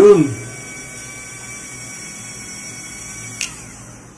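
Small brushed DC motor, used as a test load on a battery charger's output, running with a steady high whine. About three and a half seconds in there is a click, and the whine winds down in pitch and fades as the motor is switched off.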